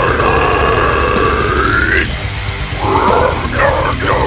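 Deathcore song with harsh screamed vocals over heavy drums and guitars: one long held scream that bends upward and cuts off about two seconds in, then a shorter scream near the end.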